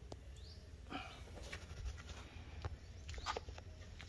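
A faint animal call about a second in, over a low, steady background, with a few faint clicks later.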